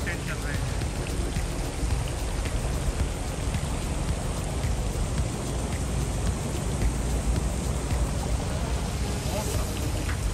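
Garden fountain jets splashing steadily into a stone water channel: a continuous rush of falling water.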